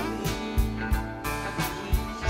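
Rock band playing live: guitars and keyboards over bass and a steady drum beat of about three hits a second.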